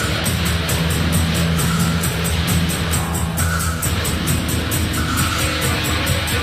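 Rock band playing an instrumental passage between vocal lines: a fast, even beat of about five strokes a second over sustained low bass notes.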